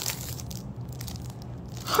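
Paper and a cardboard gift box being handled and opened, a rustling, crinkling noise with a few sharper crackles at the start.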